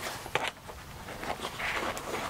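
Handling noise as a small night-vision helmet mount is pushed into a padded nylon bag compartment: a few light clicks, then a brief rustle of fabric near the end.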